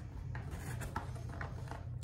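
Faint rubbing and scraping of a cardboard packaging box being slid and turned in the hands, over a steady low background hum.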